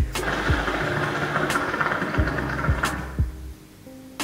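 Water bubbling in the base of a Piranha hookah as smoke is drawn through it in one long pull, fading out about three seconds in. Background music with low beats runs underneath.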